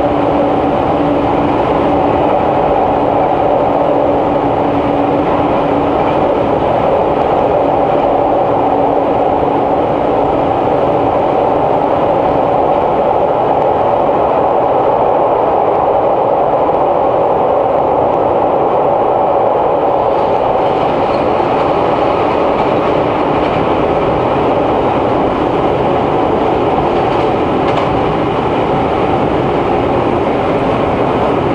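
Inside a series 485 electric train car running at speed: steady wheel and running noise, with a low hum that fades away about seven seconds in.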